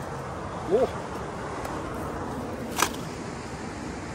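Steady outdoor rushing noise with a short vocal sound about a second in and one sharp click near three seconds.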